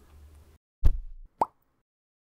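Sound effects of an animated logo intro: a sharp low thump just under a second in, then a short upward-gliding plop about half a second later.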